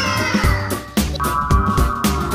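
Upbeat background music with a steady beat of about two low thumps a second. A high tone falls in pitch over it during the first second.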